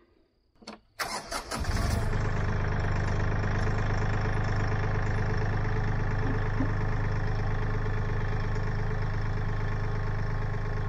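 Kioti CK4010hst diesel tractor engine being cranked about a second in and catching almost at once, then running steadily.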